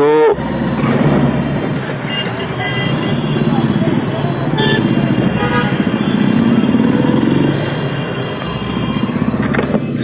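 Suzuki Gixxer 155's single-cylinder engine running as the motorcycle pulls away into traffic, rising in pitch as it accelerates about six to seven and a half seconds in. A few short horn beeps sound from the surrounding traffic.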